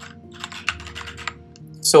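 Computer keyboard typing: a quick run of light keystrokes for about a second and a half as a word is typed, then stopping.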